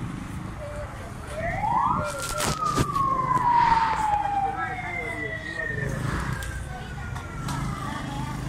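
A siren sweeps quickly up in pitch, then slowly falls over about four seconds, and a second, higher siren tone falls later. This sounds over steady street noise, with a few sharp clicks as the first siren peaks.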